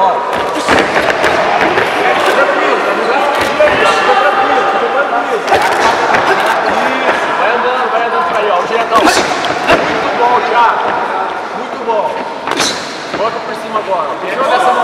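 Boxing gloves landing punches in a few sharp smacks, the loudest about nine seconds in and another near the end, over indistinct shouting that echoes through a large hall.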